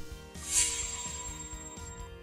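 Background music between narrated lines: held tones, with a short high shimmer about half a second in.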